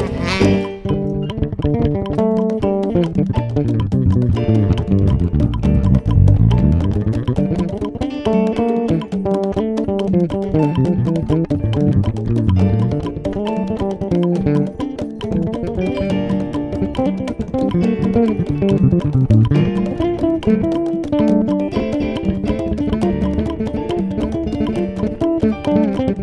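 Electric bass guitar playing a fast solo line, a busy run of short notes in its low and middle register. A saxophone phrase ends just as it begins.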